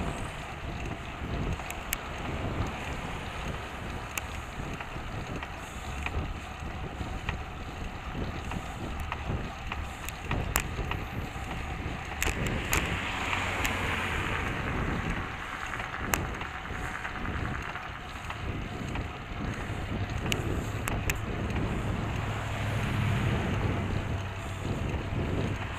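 Wind noise and road rumble on a bicycle-mounted camera while riding in traffic, with a few sharp clicks. Passing motor traffic swells the noise about halfway through, and a low engine hum builds near the end.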